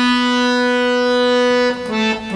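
A harmonium's reeds hold one long, steady note, then move on to lower notes near the end.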